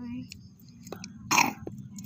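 A single short, loud throaty sound, like a burp or a brief grunt, about a second and a half in, over a steady low background hum.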